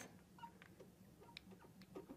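Near silence, with a few faint, brief squeaks and ticks of a marker writing on a glass lightboard.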